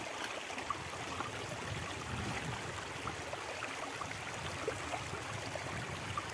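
Shallow river water running steadily over stones and through a small metal gold-prospecting sluice box set in the current.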